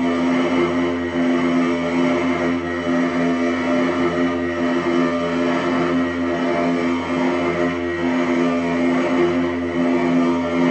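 Experimental electronic drone from a tabletop rig of effects pedals played through a small amplifier: several low tones held steadily together under a dense, noisy hiss, sustained without a break.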